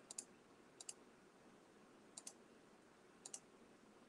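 Faint clicks of a computer trackball mouse's button, four short double clicks spread over a few seconds against near-silent room tone.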